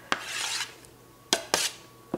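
Metal spatula scraping roasted vegetables off a metal sheet pan into a ceramic serving bowl. A clink and a half-second scrape, then a sharper clink and a shorter scrape about a second later.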